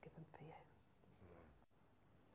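A person speaking faintly in a low, murmured voice, in short snatches.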